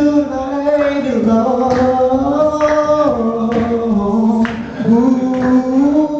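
Harmonica playing long held notes that step up and down in pitch, over strummed acoustic guitars, banjo and hand drum, with a steady beat about once a second.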